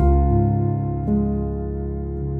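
Grand piano playing a slow, calm solo passage. A chord with a deep bass note is struck at the start and left to ring, and a new note comes in about a second in.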